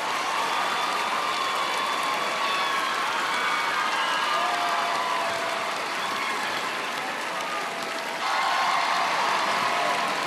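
Studio audience applauding and cheering after the dance, with voices calling out over the clapping. It grows louder about eight seconds in.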